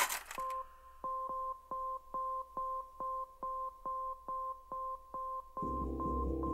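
A rapid, even series of short electronic beeps, about two and a half a second, each at a steady pitch. Music comes in near the end.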